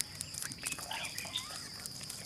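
Natural ambience: a steady high insect trill with short warbling calls from a bird about half a second to a second and a half in, and scattered sharp clicks.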